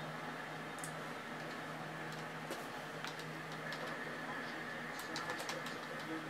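A steady low electrical or room hum with scattered faint computer keyboard clicks, which come in a quick run near the end as a name is typed in.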